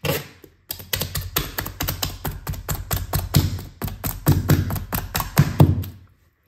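Claw hammer tapping rapidly on a duct-tape strip stuck to a laminate floor plank, about five blows a second with the hardest ones near the end, knocking the floating plank sideways to close the gap.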